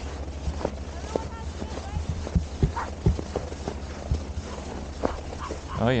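Footsteps crunching in packed snow on a frozen lake: irregular steps, a few each second, over a steady low rumble.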